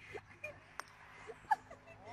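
A putter striking a golf ball once, a single light click about a second in, against faint distant voices.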